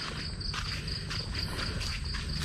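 Night insects chirping in a steady, high, pulsing call of about five pulses a second, with a few footsteps on the dirt-and-stone trail.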